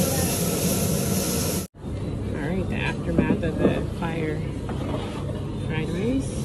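Gas wok burners and flaming woks hissing and sizzling in a steady, loud rush that cuts off abruptly a little under two seconds in. After that, quieter room sound with people's voices.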